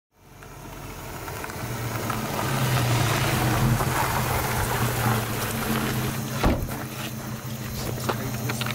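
A car engine runs with a steady low hum under wind-like noise, fading in from silence, with one sharp knock about six and a half seconds in.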